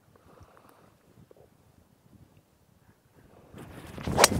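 Quiet open-air ambience with light wind on the microphone and a few faint ticks. Near the end a rush of wind noise swells up.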